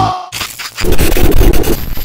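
Heavy rock music cuts off abruptly, and after a brief gap harsh crackling static and glitch noise comes in, louder from about a second in.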